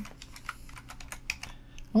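Computer keyboard typing: a quick, irregular run of key clicks as a short word is typed.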